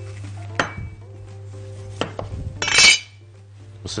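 Kitchen utensils being handled on a worktop: a couple of sharp knocks, then a brief clattering clink just under three seconds in, the loudest sound, over a steady low hum.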